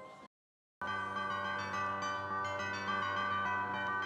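Christmas bells sound effect played by an Ital Resina Taga Disco Christmas kiddie ride: many bells chiming together with fresh strikes. It starts about a second in, after a short silence.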